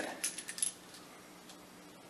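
5.56 brass cartridge cases clinking lightly against one another in a cupped hand as they are sorted with the fingers: a few small clinks in the first half-second or so, then little sound.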